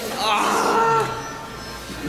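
A young man's loud, drawn-out whining cry for about the first second, then dying away.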